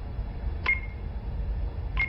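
Smartphone touchscreen tap tones: a short click with a brief high beep about two-thirds of a second in, and another near the end, over a steady low rumble.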